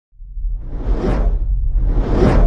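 Cinematic logo-intro sound effects: a deep rumble swells up out of silence, with a whoosh peaking about a second in and a second whoosh building near the end.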